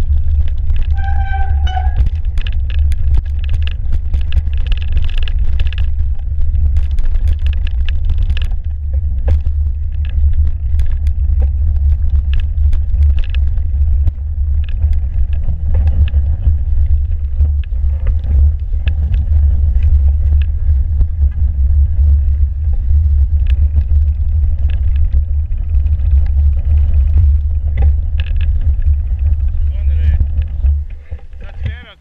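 Mountain bike riding over a packed-snow trail, heard through a bike-mounted camera: a loud steady low rumble of wind and vibration on the mount, with frequent clicks and rattles as the bike jolts over bumps.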